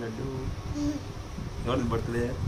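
A man's low, buzzing hum during play with a toddler, followed by a few short voice sounds.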